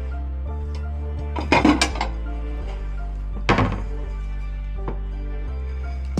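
A ceramic plate clattering twice, about one and a half seconds in and again about three and a half seconds in, as it is taken from a kitchen cupboard and set down, over soft background music.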